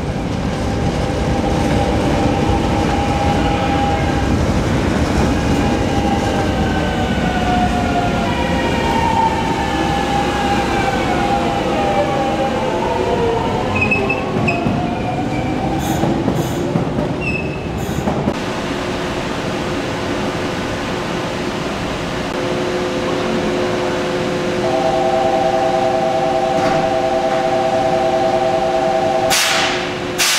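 A Kobe Municipal Subway train pulling away, its Hitachi GTO-VVVF traction inverter whining through several tones that climb and shift in pitch over the rumble of the wheels, fading out about fifteen seconds in. Later, a stopped train gives off a steady electrical hum with a few held tones.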